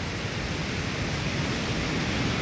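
Fast, muddy floodwater of a swollen river rushing past, a dense, steady rush that grows slightly louder.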